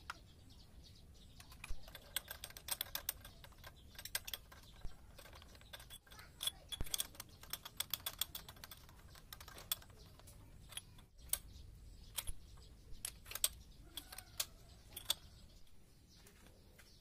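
Hand tools and small metal parts clicking and clinking against a bare engine cylinder head: clusters of short, sharp metallic clicks with pauses between them.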